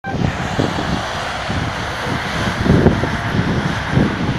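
Road traffic on a highway, a steady low rumble of passing vehicles.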